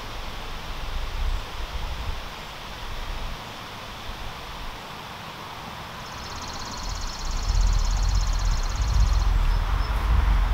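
Outdoor ambience: a low wind rumble on the microphone that swells louder over the last few seconds, with an insect's high, rapidly pulsing trill for about three seconds from the middle.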